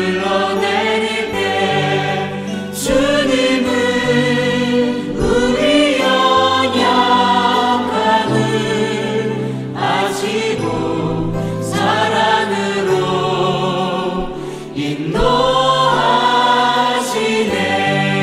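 Korean Christian worship song (CCM): sung vocals in long, held phrases over a sustained, steady accompaniment.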